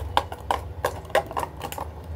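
Fingers crumbling roti into curd in a steel plate, making irregular light clicks and taps against the metal, about six in two seconds.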